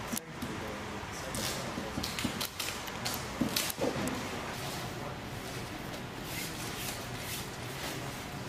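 Light clicks and clinks of a metal shackle and its bolt being handled on a webbing sling, over indistinct voices and steady background noise.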